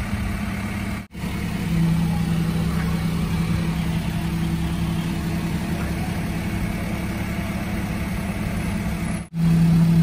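Flatbed recovery truck's engine running steadily with a low hum while its hydraulic bed tilts and slides back to the ground. The sound cuts out briefly twice, about a second in and near the end.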